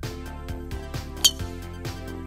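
Background music with a steady beat; about a second in, one sharp, loud click of a golf club striking the ball.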